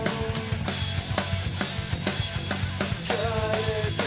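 Pop-punk band playing an instrumental passage of the song: steady drum kit hits, with a held melody note that stops about half a second in and a new one sliding up into place near the end.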